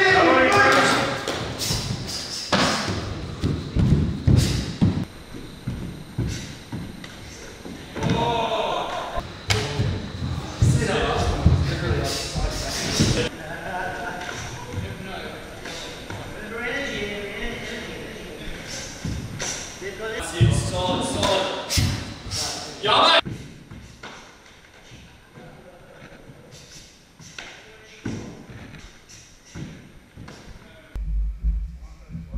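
Hard sparring in a large hall: thuds of gloved punches and kicks landing, mixed with shouts and voices. The action is busy for about the first 23 seconds, then drops to a few scattered thuds.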